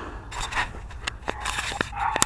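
Handling noise from a cap-mounted camera being fingered near its microphone: a short rustle about half a second in, then a scatter of small sharp clicks and taps.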